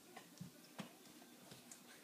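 A few faint, soft taps of a crawling baby's hands and knees on a hardwood floor.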